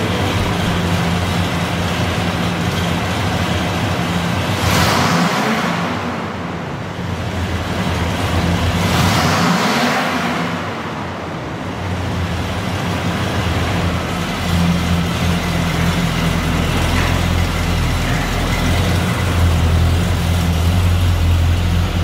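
1976 Chevrolet C10 pickup engine running, revved twice at about five and nine seconds in, then running louder from about halfway through as the truck pulls away.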